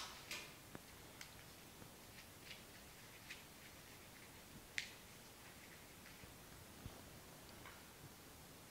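Near silence broken by faint, scattered clicks and light rustles as rose stems and foliage are handled and set into a flower arrangement; the sharpest click comes a little before five seconds in.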